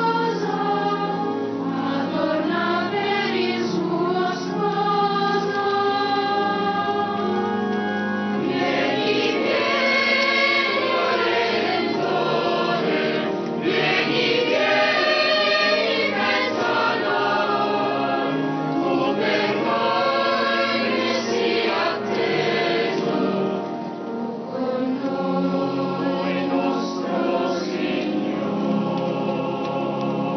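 Church choir singing the entrance hymn of the Mass, many voices in sustained, moving lines.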